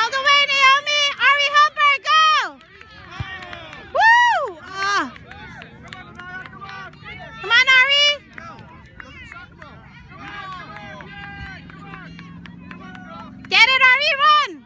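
A spectator shouting encouragement in short, loud, high-pitched calls, in bursts near the start, about four seconds in, around eight seconds in and again at the end, with quieter voices of children and other spectators in between.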